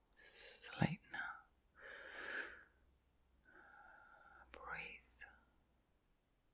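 A woman's voice whispering softly in several short breathy phrases, the words not made out, with a sharp click about a second in.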